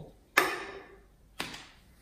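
An aluminium cider can set down on a wooden slatted table: a sharp knock, then a lighter knock about a second later.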